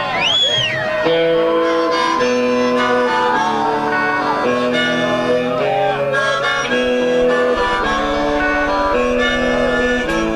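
Amplified harmonica played through a vocal microphone in a live rock band, with electric guitar. It blows held chords that change about every half second to a second, and opens with a bent note that rises and falls.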